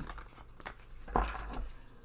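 Tarot cards being handled on a wooden table: a few light clicks, then a short papery rustle with a soft bump just past the middle.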